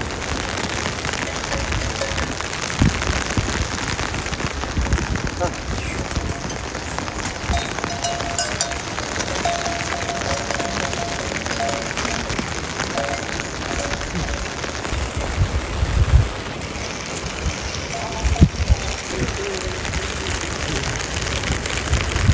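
Steady rain falling, an even hiss, with a few low thumps along the way.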